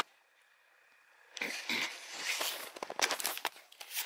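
A second or so of near silence, then rustling and handling noise with a few short clicks as a handheld compact camera is moved about.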